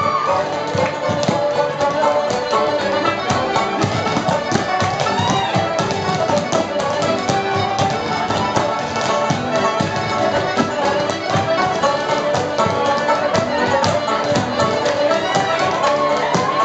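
Live Irish traditional dance music on accordion and banjo, with a rapid, continuous tapping of sean-nós dancers' hard-soled steps and brush heads striking the floor in the brush dance.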